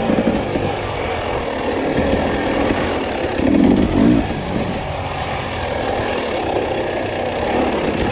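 Dirt bike engine running under throttle while riding a dirt trail, with two short louder pulses in its note about halfway through.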